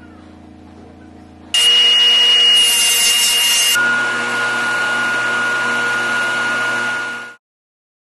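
A low steady machine hum. About one and a half seconds in, loud power-tool noise with a high steady whine starts suddenly. Near four seconds it changes to a lower whine as a bench-motor polishing wheel works a silver chain held on a steel mandrel, and it cuts off abruptly near the end.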